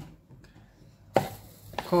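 A single sharp knock on a hard surface a little past a second in, followed by a fainter click just before speech resumes.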